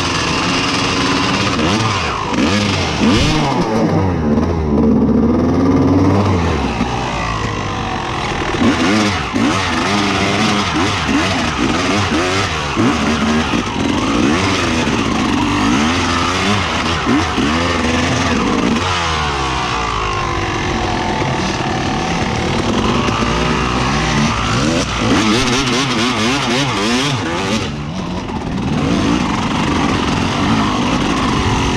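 Off-road dirt bike engine ridden hard on a rough trail, the revs rising and falling constantly as the throttle is worked. A few seconds in it runs steadier at low revs for a moment before revving up again.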